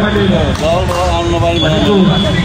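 Speech: a man talking, with other voices behind him.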